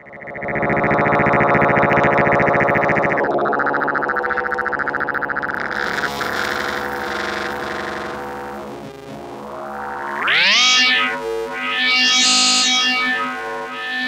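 Synthrotek FOLD Eurorack module: a ring-modulated tone (sine wave times square wave) run through its wave folder as the fold level is raised, a dense, buzzy, metallic drone full of overtones. Near the end its brightness swells up and falls back twice.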